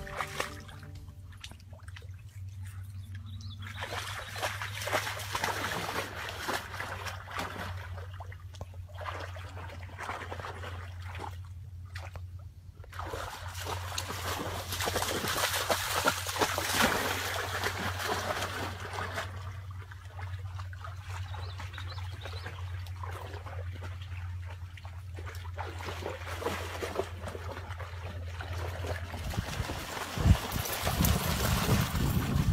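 A dog wading and splashing through shallow lake water, in uneven bursts that are loudest about halfway through, over a steady low hum.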